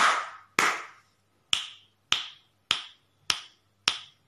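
Two hand claps followed by five finger snaps at an even pace, about one every 0.6 seconds. The claps count tens and the snaps count ones in a place-value counting game.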